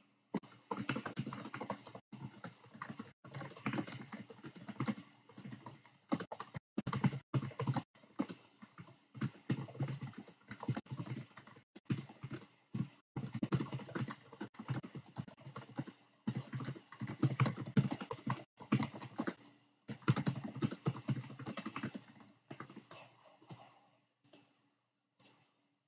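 Computer keyboard being typed on: a fast clatter of keystrokes in bursts, broken by brief pauses every second or two.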